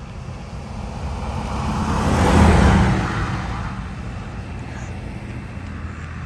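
A vehicle fitted with an exhaust flamethrower drives past at about 55–60 mph. Its engine and exhaust noise builds, is loudest about two and a half seconds in, then fades as it moves away.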